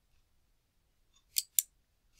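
Two quick computer mouse clicks about a fifth of a second apart, near the end.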